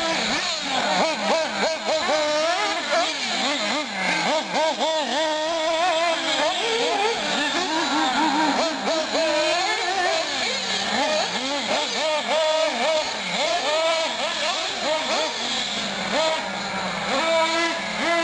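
Small high-revving nitro glow engines of 1/8-scale R/C off-road cars racing around a dirt track, more than one at a time, their pitch constantly rising and falling as they accelerate and back off.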